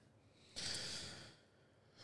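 A person's single breathy exhale, like a short sigh, lasting about a second and fading out.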